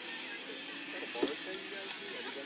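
Distant voices and faint background music over steady outdoor ambience, with one short thump a little past a second in.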